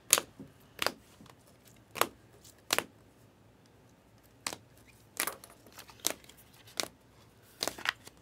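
Trading cards in rigid plastic holders being handled and flipped through: a series of sharp plastic clicks and taps, about nine, at irregular intervals.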